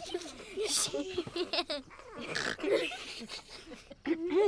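Several children's voices chattering, giggling and whispering over one another without clear words.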